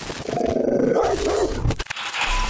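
A dog growling and barking for about a second and a half.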